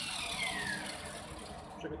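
Handheld electric disc sander with a hook-and-loop pad spinning down after being switched off. Its whine falls steadily in pitch over the first second and the running noise fades away near the end.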